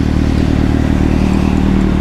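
Kawasaki Z800's inline-four engine running at a steady cruise, its pitch holding level, under a steady hiss of tyres and wind on a wet road.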